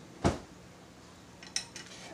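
A metal fork knocking once sharply against a plate, followed about a second and a half in by a few faint light clicks.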